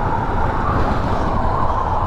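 Wind rushing over a bike-mounted camera microphone, with a motorcycle engine running at high highway speed; a loud, steady rumble.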